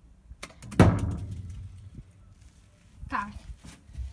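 One loud thump about a second in, with a low ringing decay, from the corrugated-metal-walled box of a finger-flick football game, preceded by a couple of light clicks.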